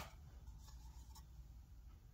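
Near silence: low room tone with two faint clicks, about half a second apart, in the first half.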